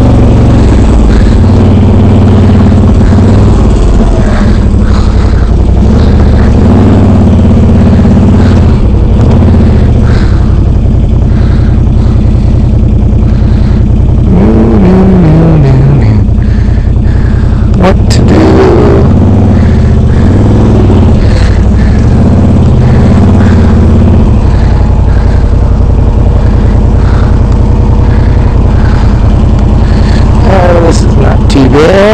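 The Can-Am Renegade 800R XXC's V-twin engine runs loud under changing throttle as the ATV crawls along a muddy trail. Around the middle its pitch falls away, and a single sharp knock follows a couple of seconds later.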